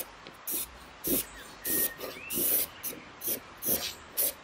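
Charcoal pencil drawn in quick strokes across a hardboard panel: a series of short, scratchy sweeps, about two a second.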